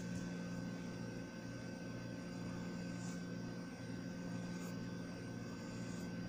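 A steady low hum with a faint hiss, even throughout, with no distinct strokes or knocks standing out.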